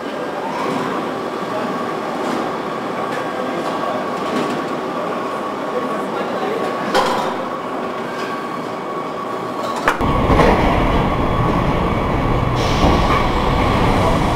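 Car assembly-line machinery noise: a steady mechanical din with a constant thin whine and a few sharp clanks. About ten seconds in, a deeper rumble cuts in abruptly.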